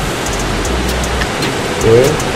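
Steady rain falling, a constant even hiss, with a few faint clicks.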